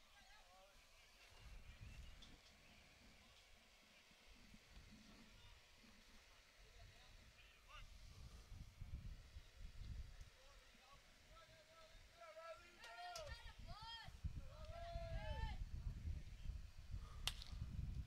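Quiet field ambience with faint, distant voices calling across the diamond, then a single sharp crack of a bat hitting the ball near the end, as the batter puts it in play on the ground.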